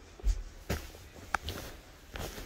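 Footsteps and handling thumps, a few soft low thuds, with one sharp click a little over a second in.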